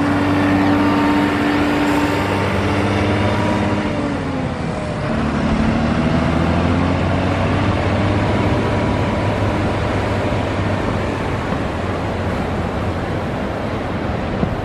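An engine running steadily, its pitch dropping about four seconds in and climbing back a second later, over a constant hiss of surf and wind.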